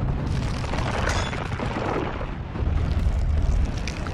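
Deep, noisy rumble of battle sound effects from an animated fight, with a hiss over it, the low rumble swelling about two and a half seconds in.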